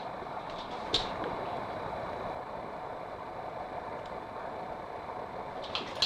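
Steady room hum with a single sharp click about a second in and a few faint clicks near the end.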